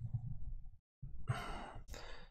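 A man's breathy sigh about a second in, followed by a short click.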